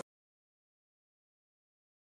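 Silence: the soundtrack is completely blank, with no sound at all.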